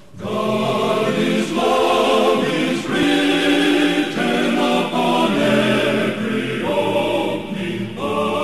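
Male gospel vocal quartet singing a hymn in close harmony, held chords changing about every second. The singing comes back in strongly just after a short pause at the start.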